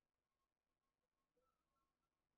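Near silence: a digital noise floor with no audible sound.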